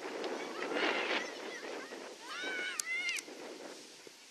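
Children's voices shouting across a football field: a loud jumble of voices about a second in, then a few high, drawn-out calls near three seconds.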